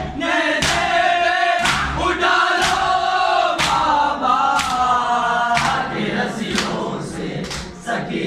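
Men chanting a noha together in unison, with sharp slaps of hands on bare chests (matam) about once a second that beat the rhythm of the lament.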